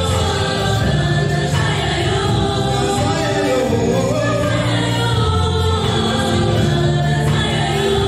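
Live gospel worship music: a group of singers singing together in chorus over a band with bass, keyboard and drums, the music running steadily throughout.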